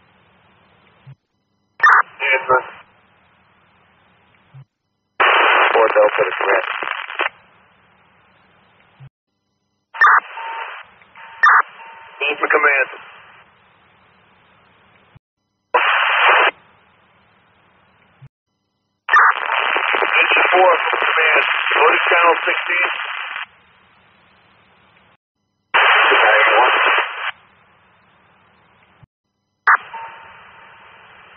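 Fire department radio traffic heard through a scanner: about six short, narrow-band voice transmissions that are too garbled to make out, each keying on and cutting off abruptly. A thin steady whistle runs through several of them, and only faint hiss and hum remain between them.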